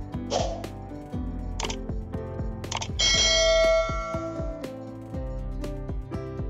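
Background music with a steady beat, and a single bright bell-like chime about halfway through that rings on and fades.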